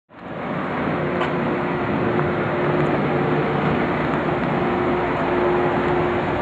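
Nissan forklift's propane engine running steadily, a low hum under a noisy wash, fading in at the very start.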